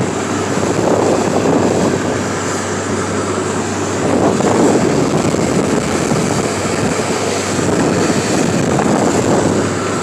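A motorboat's engine running steadily at cruising speed with the boat under way, under a loud rush of wind and water that swells and eases every few seconds.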